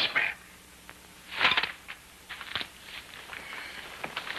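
Rustling and crackling of dry leaves, branches and cloth as a man moves and disentangles himself, with a louder rustle about a second and a half in and short crackles near the end.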